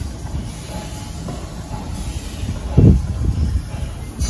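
Low, steady rumbling noise with one louder thump about three seconds in.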